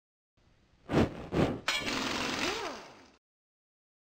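Produced logo-intro sound effect: two sharp hits about half a second apart, then a crash with a long, noisy tail that dies away over about a second and a half, with a short rising-then-falling tone inside it.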